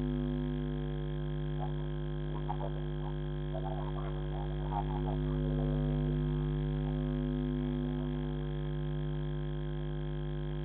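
Steady low droning hum with a stack of overtones, the kind of electrical hum a security camera's microphone picks up, with a few faint short chirps or distant voice sounds between about 1.5 and 5 seconds in.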